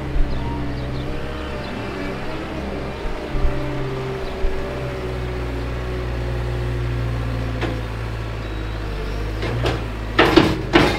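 Caterpillar wheel loader's diesel engine running under load as the machine lifts its grapple bucket of straw-and-manure bedding and dumps it into a manure spreader. The engine's pitch shifts with the work, and there are a few short knocks.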